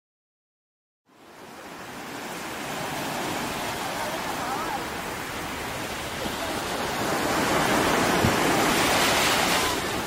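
Silence for about the first second, then sea surf: small waves breaking and washing up a beach. It is a steady rushing sound that builds and is loudest near the end.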